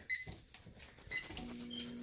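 Microwave oven keypad beeping: a few short, high electronic beeps. Then the oven starts up with a steady low hum over the last part.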